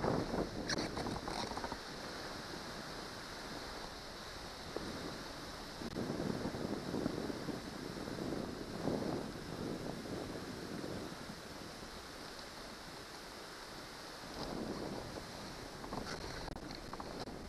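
Wind on the microphone, rising and falling in gusts over a steady hiss: louder swells at the start, in the middle and near the end.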